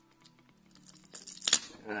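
Glued-down satnav battery being peeled off its plastic housing: the adhesive crackles and tears, building to a sharp rip about one and a half seconds in as the battery comes free.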